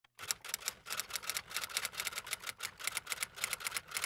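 Typewriter keys clacking in a rapid, even run of keystrokes, about six a second.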